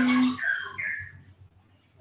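A small bird chirping twice about half a second in, two short high calls close together.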